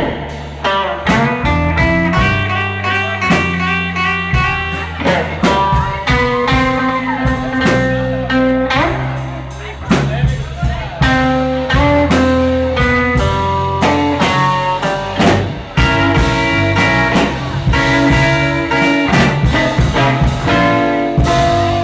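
Live blues band playing: electric guitar leads with sustained and bent notes over a walking bass line and drum kit.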